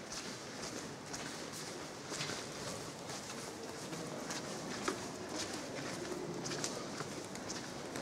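Footsteps on a stone floor, as irregular sharp clicks, sounding hollow in a large stone church.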